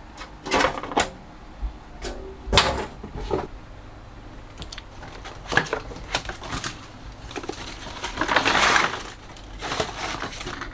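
Clear plastic aquarium lid being handled and lifted off, with a few sharp plastic knocks and clicks, the loudest about two and a half seconds in. Near the end a fabric window blind is pulled down with a rushing swish that lasts about a second.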